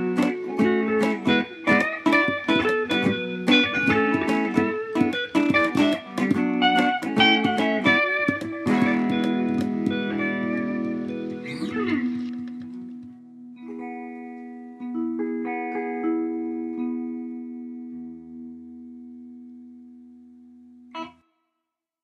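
Guitar music: quick picked notes for the first half. Then a chord rings out, followed by a few sparse closing notes that fade away. A short sharp click comes about a second before the end, then it stops.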